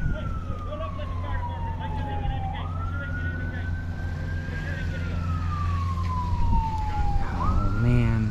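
Fire truck siren wailing: the pitch sweeps up quickly and falls slowly, rising again about two and a half seconds in and once more near the end, over a steady low hum.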